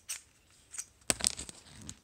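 A string of sharp plastic clicks and knocks as a black plastic smartphone clamp is handled and worked open, the loudest a little after one second in.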